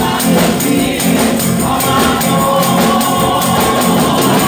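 Live gospel praise song: a small group of women singing with band accompaniment, over a fast, steady beat of high percussion.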